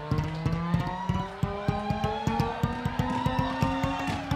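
Upright bass played with drumsticks: a quick, even rhythm of stick strikes on the strings, about seven or eight a second, while the bassist frets notes that climb step by step in pitch.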